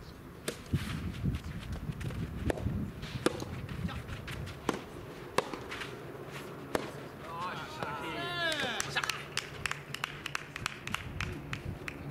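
Soft tennis doubles rally: the soft rubber ball is struck by rackets in sharp pocks about once a second, starting with a serve. Players call out, with a drawn-out shout about two-thirds of the way through.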